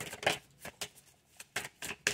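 A deck of tarot cards being shuffled by hand: irregular short flicks and slaps of cards against each other, several in quick clusters with brief pauses between.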